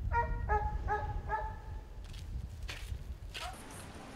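An animal giving four short, pitched calls in quick succession, about half a second apart, over a low background rumble; a few brief softer noises follow in the second half.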